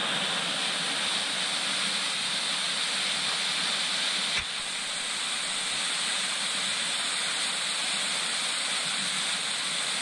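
A small waterfall rushing steadily down over rock. A brief knock sounds about four seconds in.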